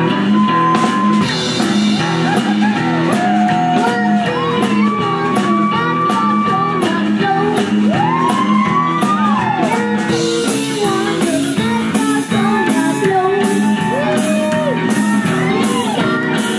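Rockabilly band playing live: upright double bass, drum kit with steady cymbal strokes and a hollow-body electric guitar, with a lead voice singing the melody over them.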